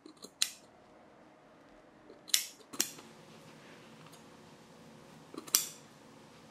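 Scissors snipping through loops of tufted yarn pile, trimming a loop-pile pillow face: about four short, separate cuts spread over a few seconds.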